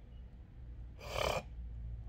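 A person's single short, sharp breath, a gasp, about a second in, over a steady low hum.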